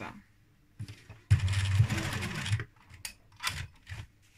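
Sewing machine running in one short burst of about a second, stitching a folded-under hem along the edge of cotton bedding fabric. Two brief knocks follow near the end.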